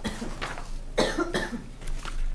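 A person coughing in a meeting room: a short cough at the start, then a longer one about a second in.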